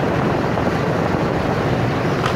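Steady wind noise buffeting the microphone of a motorbike ridden fast, a continuous "ù ù" roar.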